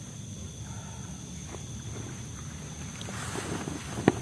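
Low steady rumble of wind buffeting the microphone, with a short rustle near the end.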